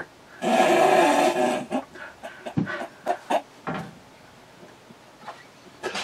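A man's long, loud breathy sigh, followed by a couple of seconds of short breathy snorts of laughter that die away.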